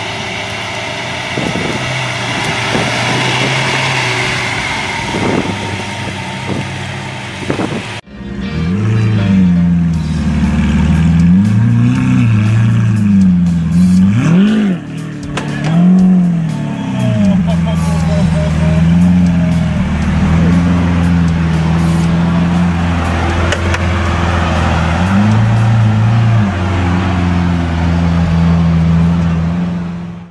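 Lamborghini Aventador V12 idling with repeated throttle blips from about eight seconds in, its note rising and falling, with one bigger rev about halfway through. Before that, a steady noisy background.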